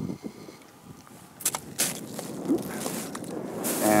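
Footsteps on loose volcanic tephra and lava rock: a few separate crunches about a second and a half in, then a rush of rising noise near the end.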